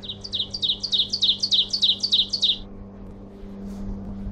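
A songbird sings a fast run of about a dozen short, high, falling notes, roughly five a second, for about two and a half seconds and then stops. A steady low hum runs underneath.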